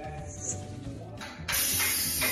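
Background music, then about one and a half seconds in a sudden loud hiss of PAM aerosol cooking spray being sprayed onto a frying pan.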